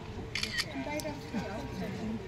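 Voices of a gathered crowd talking, with camera shutter clicks about half a second and a second in.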